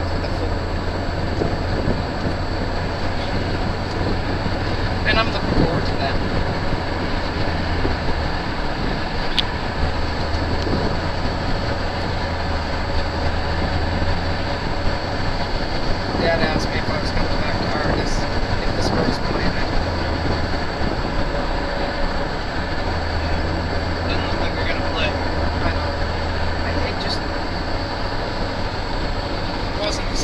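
Steady road noise inside a moving car at highway speed: tyres on asphalt and wind with a low engine drone underneath.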